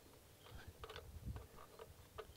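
Faint, scattered small clicks and rustles of gloved hands threading the fuel-filter nut back onto the carburettor by hand.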